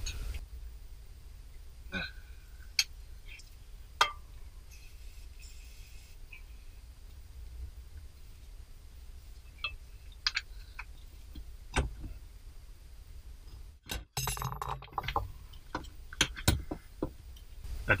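Scattered metallic clinks and taps of a wrench and socket working on a fuel filter's rear banjo bolt, which is too tight to break loose. Near the end comes a short drop-out, then a busier run of clinks and handling noise.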